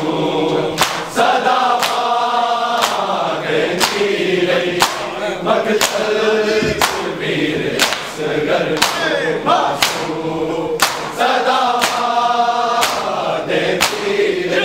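A group of men's voices chanting a Shia noha (Muharram lament) in unison. Sharp slaps of hands on bare chests (matam) keep a steady beat of about one a second.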